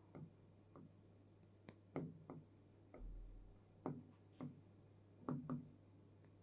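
Faint marker strokes on a writing board as a word is written out by hand: about ten short, scattered scratches with gaps between them.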